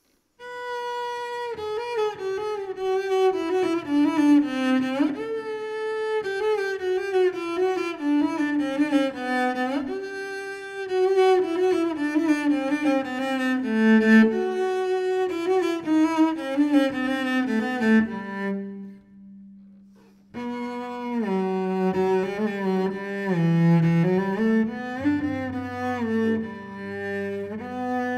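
Solo cello played with the bow: a melodic line in phrases that mostly step downward in pitch. The playing stops for about two seconds about two-thirds of the way through, then starts again.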